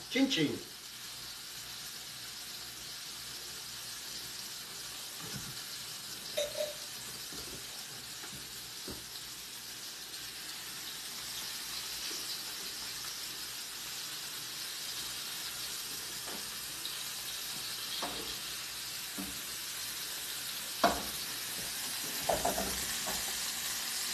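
Cod fillets frying in oil in a skillet, a steady sizzle, with a few light knocks scattered through it.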